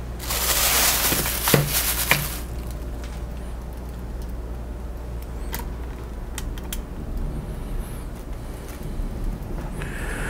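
Handling noise as a flexible plastic bridge girder plate is turned in the hand: a rustle lasting about two seconds near the start, with a couple of sharp clicks in it, then a few light, scattered clicks over a steady low hum.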